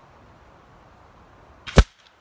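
A .30-calibre air rifle pellet striking a cardboard-backed paper target close by: one sharp crack near the end, just after a fainter snap.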